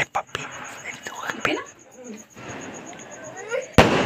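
Low, scattered voices, then a single sharp firecracker bang near the end.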